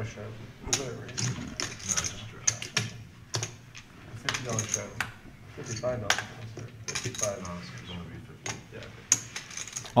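Poker chips clicking together in irregular, rapid clicks as players handle and shuffle them, with faint voices underneath.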